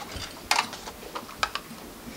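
A few sharp, irregular clicks and taps from papers, pens and objects being handled on a meeting table, over low room noise.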